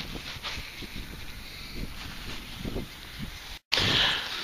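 Outdoor wind rumble and rustling handling noise on a handheld camera's microphone, with no clear event. Near the end the sound drops out completely for a moment where the recording is cut, then comes back louder.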